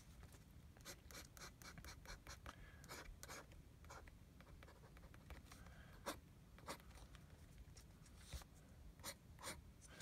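Fountain pen nib faintly tapping and scratching on paper as spots and short strokes are drawn: irregular light ticks, a few sharper ones in the second half.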